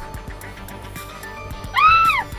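Faint background music, then near the end a loud, high-pitched squeal of a person's shriek that rises and falls over about half a second.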